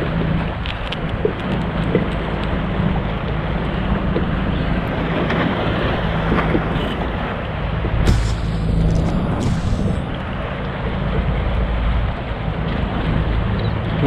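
Wind buffeting an action-camera microphone over choppy open water, with a steady low hum underneath.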